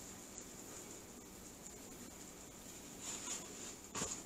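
Faint kitchen handling noise over a steady hiss: a light rustle about three seconds in and a short click at the end, as gloved hands handle food.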